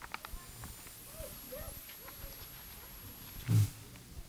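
Handling noise near a stand microphone: small clicks and rustles, then a short, dull thump about three and a half seconds in, the loudest sound here.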